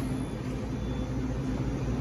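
Steady low mechanical hum of café equipment behind an espresso bar, with no sudden sounds.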